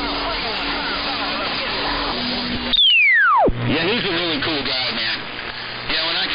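11-metre AM radio receiver audio: a garbled voice over a steady tone. About three seconds in, a loud whistle falls quickly from high pitch to nothing in under a second. After it comes another voice over a low hum.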